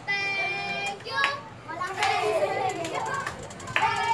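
Children's high voices talking and calling out, with pitch rising and falling.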